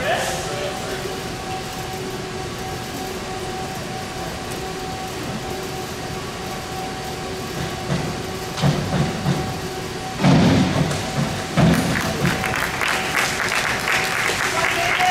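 Springboard diving: a few low thumps as the board flexes under the diver's hurdle and takeoff, then the splash of the entry into the pool about a second later, followed by scattered clapping near the end, over a steady hum.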